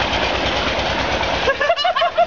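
Rushing, churning water with a steady low rhythmic thumping beneath it. Men's voices join in from about one and a half seconds in.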